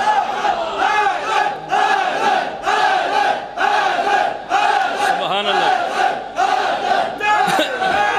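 A group of men chanting a short call in unison, repeated in a steady rhythm about once a second.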